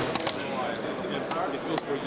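Several light clicks and taps of a knife and sharpening stone being handled on a Work Sharp Precision Adjust clamp-style knife sharpener, over background crowd chatter.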